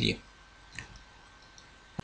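A single sharp click near the end, as a computer presentation's slide is advanced, after the tail of a spoken word; otherwise quiet room tone.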